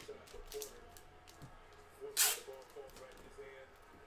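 Clear plastic team bag holding a stack of trading cards being handled and sealed: light plastic rustling, with one short, sharp crackle about two seconds in.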